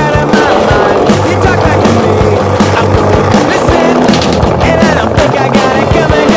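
Skateboard rolling on stone paving with occasional sharp clacks of the board, mixed under loud music.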